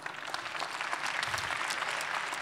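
Audience applause after a talk ends, swelling over the first second and then holding steady.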